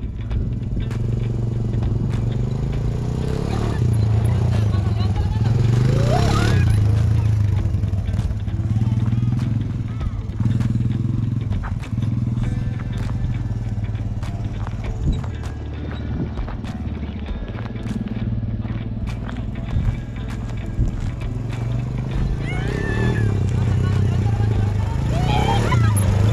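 Quad ATV engines running steadily close by, with voices now and then.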